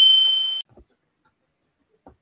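Notification-bell chime sound effect from a subscribe-button animation: a single high, ringing ding that fades and cuts off about half a second in.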